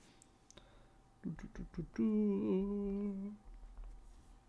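A man's voice humming: a few short murmured sounds, then one steady 'mmm' held for just over a second, beginning about two seconds in.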